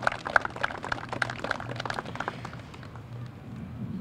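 Light, scattered applause from a small outdoor audience that thins out and fades after about two and a half seconds.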